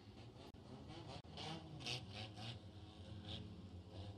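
Faint dirt-track background: a low, steady hum of distant race-car engines running, with a few short, indistinct sounds from people in the middle.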